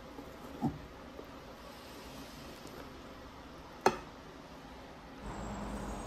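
Faint room noise with kitchen utensils against a ceramic bowl of cake batter: a soft knock under a second in and one sharp click about four seconds in.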